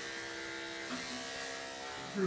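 Corded electric dog-grooming clippers running with a steady buzz as they shave a dog's coat.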